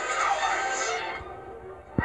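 An animated film's soundtrack playing from a television: music with voices that fades down about halfway through, ending in a sudden low hit as the sound comes back up.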